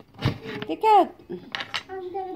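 Metal cookie cutters knocking and clinking on a wooden table as they are handled, a sharp knock near the start and a few light clicks later.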